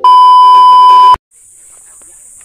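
Loud, steady test-tone beep of a TV colour-bars glitch transition, held for just over a second and cut off abruptly. A steady high hiss begins a moment later.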